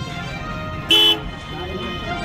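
A vehicle horn gives one short beep about a second in, over steady street traffic noise.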